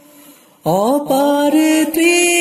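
A male voice singing an Islamic song: after a short hush, a new line begins about two-thirds of a second in with an upward swoop into a held, ornamented note.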